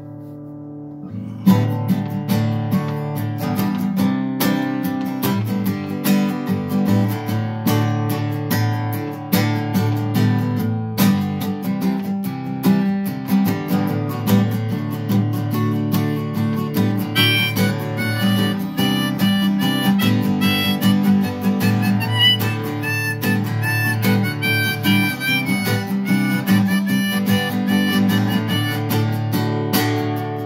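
Acoustic guitar strummed in a steady rhythm with a harmonica played from a neck rack: an instrumental intro with no singing. The strumming starts about a second and a half in, and the harmonica melody rises to the fore from a little past halfway.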